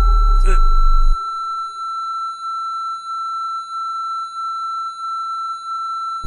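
A steady, high-pitched, pure electronic tone, the ringing-in-the-ears sound effect of a film soundtrack, held for about six seconds and wavering slightly in loudness. A deep low drone under it cuts off about a second in.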